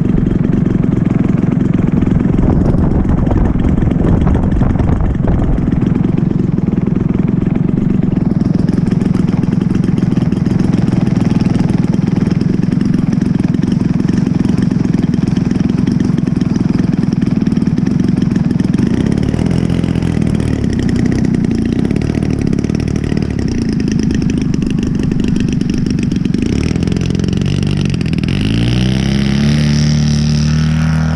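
Engine of a 116-inch Skywing NG radio-controlled aerobatic airplane running steadily at idle, its pitch shifting a little about two-thirds of the way through. Near the end it revs up with a rising pitch as the throttle is opened for the takeoff roll.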